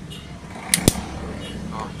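Two sharp plastic clicks, close together, a little under a second in, as the white plastic case of a Robot RT7300 power bank is squeezed shut by hand, over a steady low hum.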